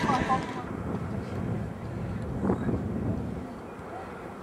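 Trackside outdoor noise with indistinct, far-off voices. A rushing noise, likely wind on the microphone, is loudest at the start and dies down within the first second or so.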